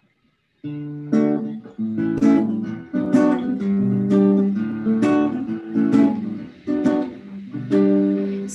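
Acoustic guitar strumming a song's intro, starting about half a second in, with a chord stroke about once a second.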